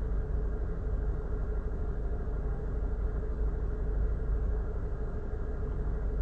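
Steady low rumble of a running engine, with a faint steady hum above it.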